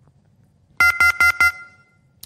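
Four quick electronic beeps on the phone line from a dropped call, about five a second, starting a little under a second in; the last one trails off. It is the sound of the line disconnecting.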